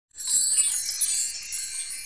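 A bright, shimmering chime sound effect, like wind chimes, playing over an opening title card. It starts just after the opening and stays high and sparkly throughout.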